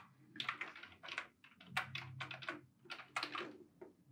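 Computer keyboard keys tapped in a quick, irregular series of light clicks.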